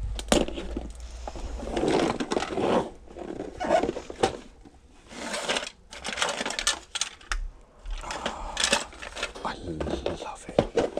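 Plastic Buckaroo game pieces clicking and clattering against each other and the cardboard box as they are handled and sorted, in a string of short knocks. A voice is heard at times in between, the words indistinct.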